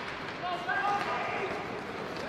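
Live ice-hockey rink sound: a steady background of play and crowd noise, with a brief shout, from about half a second in to a little past one second.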